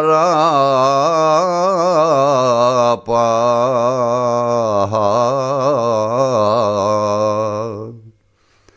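A man singing a Greek folk song in long, heavily ornamented, wavering phrases, with a brief breath break about three seconds in and the phrase dying away near the end.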